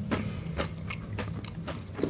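Close-up crunching and chewing of thin, fried spiral potato chips, a run of irregular crackles.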